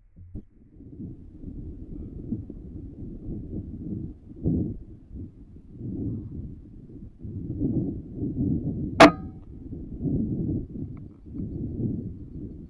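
Low rumbling wind noise buffeting the microphone in gusts, with one sharp metallic clang that rings briefly about nine seconds in.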